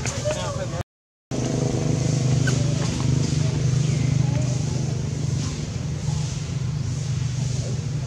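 A steady low engine hum, like a motor vehicle idling, with people's voices faintly over it; the sound drops out completely for about half a second, about a second in.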